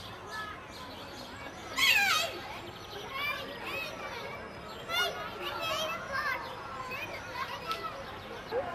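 Children playing, their voices calling out, with one loud high cry falling in pitch about two seconds in.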